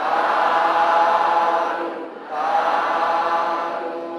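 A group of voices chanting together in unison, a Buddhist devotional recitation, in two long sustained phrases with a short break about two seconds in, trailing off near the end.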